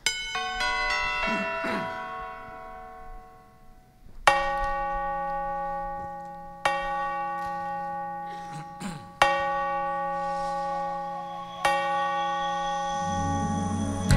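Recorded clock chime from a song's backing track, played over the church sound system: a quick run of bell notes, then four slow, ringing bell strikes about two and a half seconds apart. Low musical accompaniment comes in near the end.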